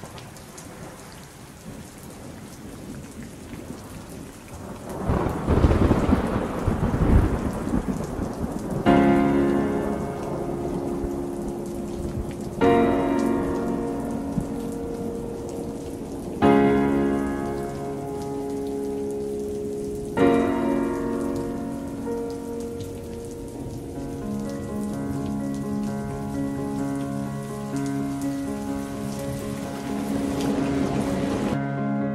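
Recorded rain with a rumble of thunder that swells and fades about five to eight seconds in. About nine seconds in, music comes in over the rain: slow chords struck roughly every four seconds, settling into a steadier run of chords near the end.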